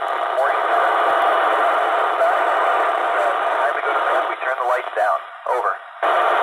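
Quad-band FM radio transceiver on the ISS 2 m downlink, 145.800 MHz, giving steady loud static hiss through its speaker. A voice breaks up through the noise in the last couple of seconds.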